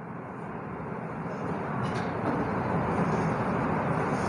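Rushing, rumbling noise of a passing motor vehicle, growing gradually louder.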